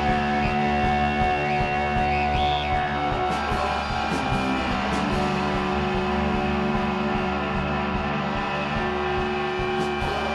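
Psychedelic rock band playing live, electric guitars holding long sustained chords over a steady low end.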